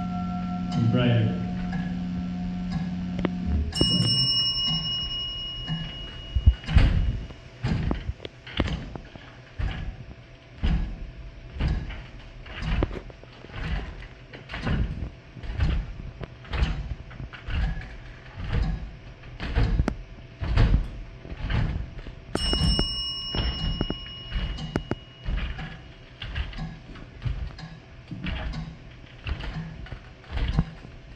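A low steady drone that stops a few seconds in, then a small bell-like chime struck twice, about four seconds in and again near twenty-two seconds, each ringing out over a couple of seconds. Under it, a run of dull knocks on the stage floor, roughly one a second, in time with performers moving across the stage.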